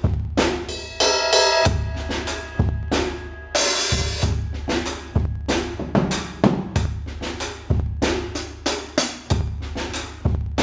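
Acoustic drum kit playing a steady cut-time groove in four, with bass drum, snare and Sabian hi-hat and cymbals. A cymbal crash rings out about three and a half seconds in.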